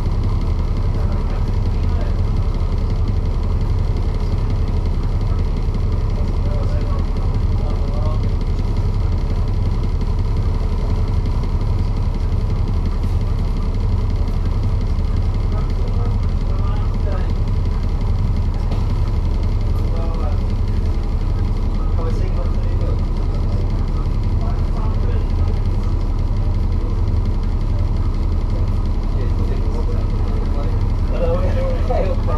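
Alexander Dennis Enviro400 double-decker bus's diesel engine idling steadily while the bus stands at a stop, heard from inside the bus, with a deep, even throb.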